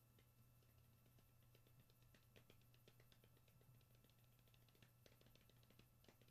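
Near silence: faint room tone with a low steady hum and scattered faint ticks.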